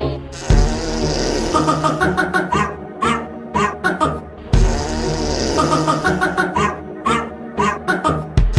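Loud music that changes abruptly about half a second in, with a small fluffy dog giving short, repeated vocal calls over it.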